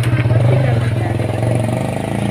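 Honda motorcycle engine idling steadily, slightly louder about half a second in.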